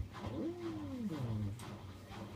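A cat meowing: one long, drawn-out meow that rises and then falls in pitch.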